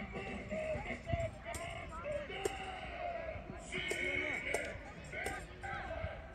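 Children's voices calling and shouting across a football pitch, several overlapping and none close, with a few sharp knocks, likely the ball being kicked.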